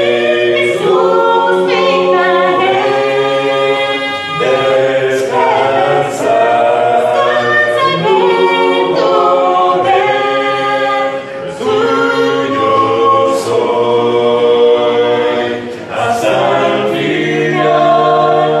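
Small group singing a Spanish-language hymn a cappella in close harmony, holding long notes, with brief breaks between phrases.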